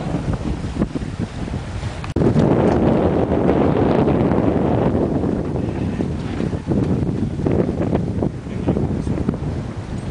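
Wind buffeting the microphone on a sailboat under way at sea, with the rush of water and waves along the hull underneath; it breaks off sharply about two seconds in and comes back louder, easing off a little past the middle.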